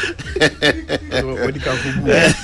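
A man laughing hard into a close microphone, his voice rising and falling in repeated laughs.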